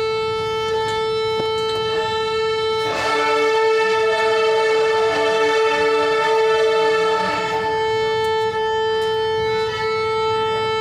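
A group of young violinists playing slow, long bowed notes in a warm-up exercise. One pitch is held steadily throughout, and other notes sound with it from about three seconds in until about seven and a half seconds in.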